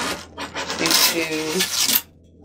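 A styrofoam insulation panel being worked loose and lifted out of a cardboard shipping box: loud scraping and rubbing of foam against cardboard, building about half a second in and running on to the end.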